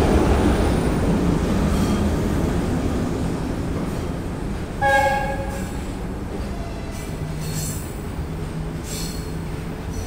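Passenger coaches rolling past, their wheels rumbling on the rails and fading as the train pulls away, with one short blast of the VL10 electric locomotive's horn about five seconds in.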